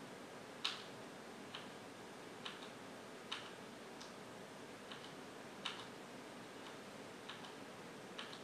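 Computer mouse clicking: single sharp clicks, about nine in all, roughly one a second, over a faint steady hiss.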